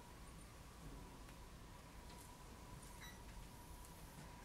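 Near silence: room tone with a faint steady high whine and a few faint small ticks.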